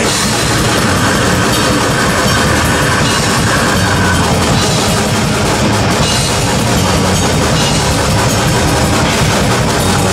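Death metal band playing live through a club PA: distorted electric guitars, bass and fast, dense drumming, all coming in together right at the start after a held chord.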